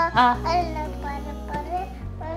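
A young child's voice, vocalising in a sing-song way, over background music.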